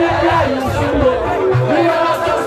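Live music played loud over a PA system, with a man's voice on the microphone over the beat and crowd noise underneath.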